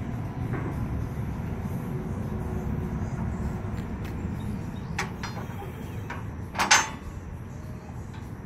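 Steel spring-assist equipment ramps, made of three-inch channel, being lifted and folded up on a trailer: a couple of light metal clicks about five seconds in, then a loud metal clank as a ramp is set upright, over a steady low rumble.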